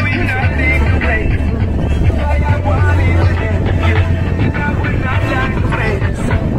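A noisy party crowd: many voices talking and calling out over loud music, with a steady low rumble underneath.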